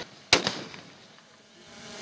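Ceremonial rifle volley fired into the air by a line of police riflemen: one loud, sharp crack about a third of a second in, slightly ragged with a weaker shot just after, its echo fading away.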